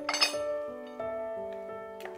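A metal hand tool is set down on a metal tray of tools: one sharp metallic clink with a short ring about a quarter second in, over background music.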